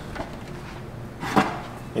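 A kitchen wall cabinet's glass-panelled door being pulled open by its knob, with one sharp click a little past halfway.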